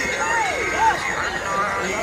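A person's voice calling out with rising and falling pitch in the first second, over background music.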